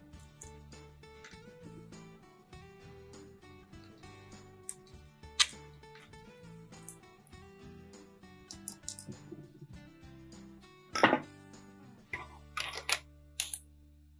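Quiet background music, with scattered sharp metallic clicks and clinks from a lever-type valve spring compressor and valve locks being handled on an overhead-valve cylinder head. The loudest clicks come about five seconds in and again about eleven seconds in.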